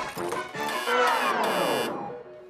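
Electronic arcade-style game music from a carnival booth game, followed by a long electronic sound effect of several tones gliding down in pitch together, which cuts off suddenly just before the end.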